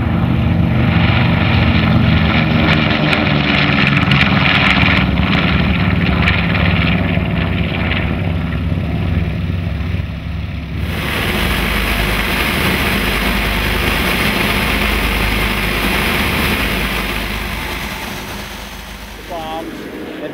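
North American B-25 Mitchell's twin Wright R-2600 radial engines running at high power as the bomber lifts off and climbs past, the pitch falling slightly as it goes by. About eleven seconds in this cuts to the steady, deep engine and wind drone heard inside the bomber's glazed nose in flight.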